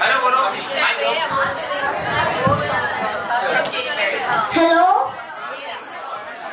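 Many people talking at once in a large hall, a general party chatter with no single voice clear. One voice rises louder for a moment a little before the end.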